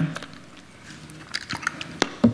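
Quiet room tone at a lectern with a few light clicks and rustles near the microphones, about a second and a half in, from hands handling things on the podium.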